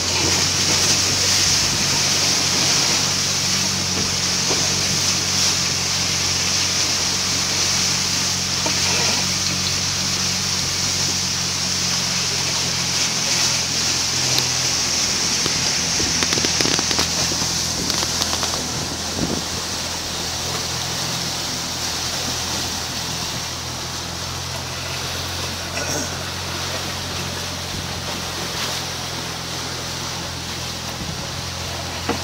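Sailing trimaran surfing at about eleven knots: a steady rush of water along the hulls, with a steady low hum underneath. It eases slightly toward the end.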